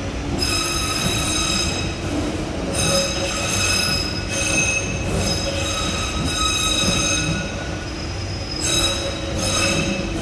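Waterloo & City line 1992-stock tube train pulling out of the platform, its wheels squealing in several stretches of high, steady ringing tones over the low rumble of the moving cars.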